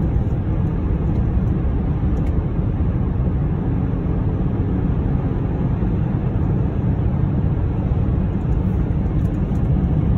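Car driving steadily along a highway, heard from inside the cabin: an even, low rumble of tyre and engine noise.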